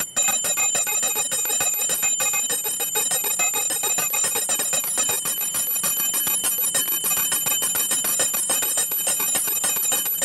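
Puja hand bell (ghanta) rung rapidly and without pause, a dense clanging with high ringing overtones, broken only for a moment right at the start. It accompanies the incense offering to the deity.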